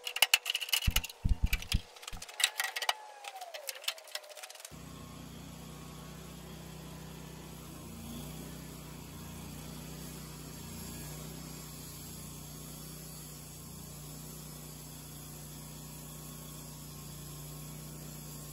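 A run of sharp clicks and metallic clatter as a new band blade is fitted to a Wood-Mizer band sawmill. About five seconds in it gives way to the sawmill running steadily, turned down low, with a constant low hum.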